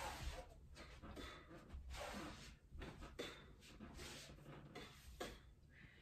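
Faint, repeated swishes and rustles of a person moving through karate techniques: clothing brushing and feet shifting on an exercise mat as she steps back, blocks and punches, one every second or so.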